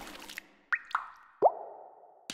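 Liquid drip sound effects: three quick plops, each dropping in pitch, each lower than the one before, the last the loudest, a little under a second apart.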